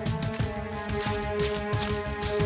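Dramatic background music: held synth tones over a fast, steady drum beat of about four to five hits a second.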